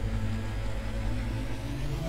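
Low, steady rumbling transition sound effect with sustained deep tones, accompanying an animated title card.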